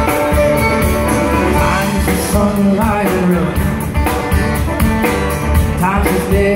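Live folk-rock band: fiddle playing over strummed acoustic guitar and a drum kit keeping a steady beat, with the fiddle sliding between notes.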